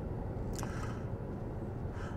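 Steady low rumble of road and tyre noise heard inside the cabin of a 2023 Genesis G90 on the move, with a brief faint click about half a second in.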